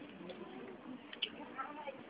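Indistinct voices of people talking, not close to the microphone, with one short sharp click just after a second in.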